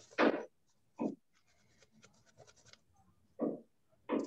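Three short scraping or rustling noises, the loudest near the start, with faint clicks between them: something being handled close to a microphone.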